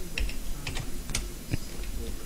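Typing on a computer keyboard: a quick, uneven run of key clicks as a password is entered.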